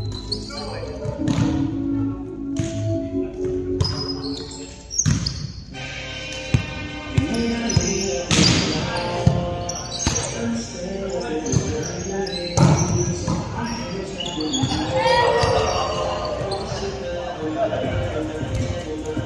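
Volleyball rally in a large gym: a series of sharp slaps of hands and arms on the ball, from the serve through passes and hits, ringing in the hall. Players' voices call out between the hits.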